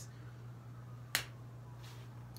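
A quiet room with a steady low hum, broken by one sharp click about a second in and a fainter click near the end.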